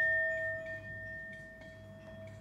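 Hand-held metal singing bowl ringing out after a strike of its wooden mallet: one clear steady note with a fainter higher overtone, slowly fading away.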